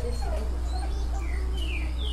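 A dog whining: a few short, high-pitched falling whines in quick succession, over a steady low hum.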